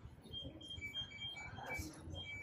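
Small birds chirping faintly: a string of short, high chirps at two alternating pitches, irregularly spaced.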